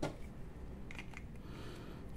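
A single sharp click, then a couple of faint ticks and light handling noise from a baitcasting reel being reassembled in the hands.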